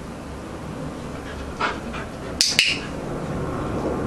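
A handheld dog-training clicker pressed and released: two sharp clicks close together, a little past halfway, marking the moment the husky puppy does the right thing, followed by a food reward.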